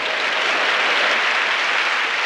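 Live theatre audience applauding: a steady wash of clapping.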